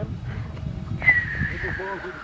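A long whistle gliding steadily downward from high to lower pitch, the classic falling-bomb whistle, starting suddenly about a second in as the model B-25's bombs drop, over a steady low rumble.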